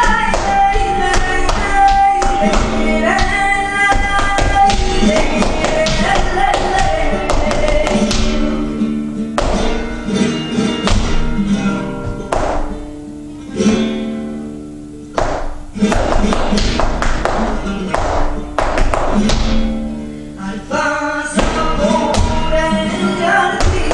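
Flamenco tientos music with guitar, with sharp taps running through it; the music drops quieter for a few seconds about halfway through.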